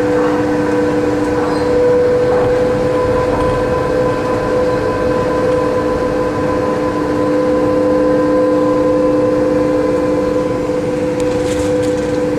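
Von Roll MkIII monorail car travelling along its beam, heard from inside the car: a steady electric hum with two notes over constant running noise, the lower note starting just before and holding throughout.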